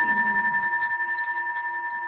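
A single struck bell ringing out with two clear steady tones, slowly fading with an even waver in loudness.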